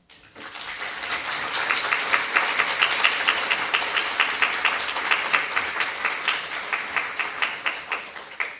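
Audience applause in a lecture hall, many people clapping. It swells quickly, holds, and fades away near the end.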